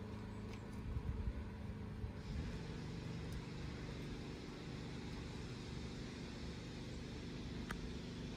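Steady low hum of a running vehicle engine, with a rushing noise coming in about two seconds in.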